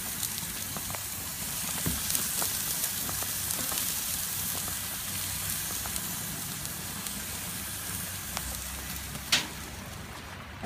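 Vegetables sizzling in a wire basket on a gas grill: a steady sizzling hiss with scattered small crackles, and one sharp click near the end.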